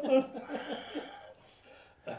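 A man chuckling softly, a run of short breathy laughs that die away after about a second and a half.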